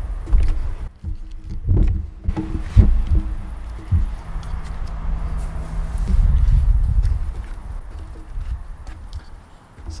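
A low rumbling noise with several dull knocks in the first four seconds, then a faint low hum in the middle.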